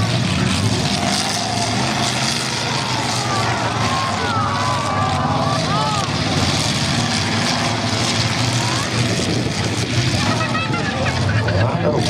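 Demolition derby pickup trucks' engines running and revving on a dirt arena, a steady low rumble under general crowd noise, with nearby voices from about two to six seconds in.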